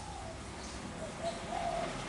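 Spotted dove cooing: a short run of low coo notes, the longest and loudest near the end.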